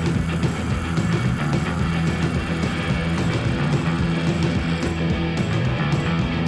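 Rock music from a band, with guitar, playing steadily with no singing.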